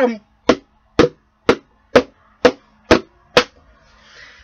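A pin jabbed again and again into the bottom of a plastic Folgers coffee canister: seven sharp, hollow-ringing taps, about two a second, without piercing the plastic.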